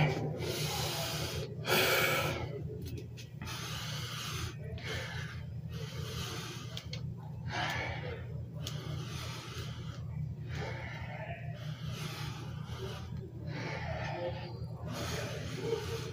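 A man breathing hard through a set of squats, with a short, noisy breath about every second and a half over a steady low hum.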